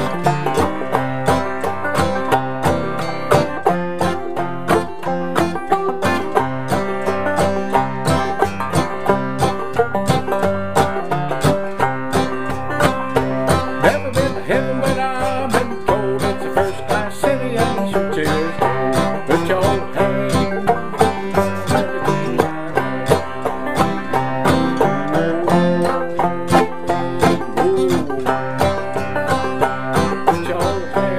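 Clawhammer banjo and acoustic guitar playing an old-time spiritual tune together, a steady run of quick picked notes with a syncopated feel.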